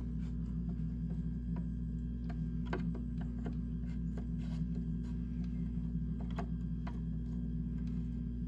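Scattered, irregular clicks and ticks of a screwdriver turning small screws into a plastic switch faceplate, over a steady low hum.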